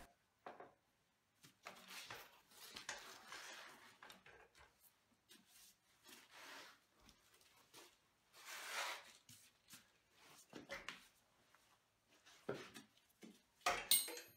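Faint, scattered handling noises, soft rustles and scrapes with a few light knocks near the end, as a motorcycle's drive chain is lifted off the rear sprocket and the rear wheel is worked out of the swingarm.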